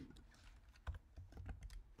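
Computer keyboard typing: a run of faint, irregular keystrokes, coming thicker after the first second.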